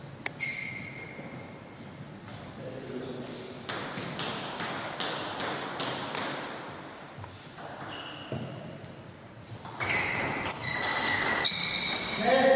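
Table tennis ball clicking: a run of sharp bounces, about two a second for a few seconds. Near the end comes a quicker, louder exchange of the ball off bats and table in a rally.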